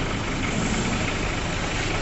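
Steady street noise with a motor vehicle engine idling.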